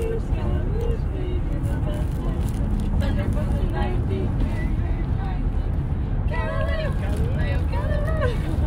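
Steady low road and engine rumble inside a car's cabin, with passengers' voices talking indistinctly over it, livelier near the end.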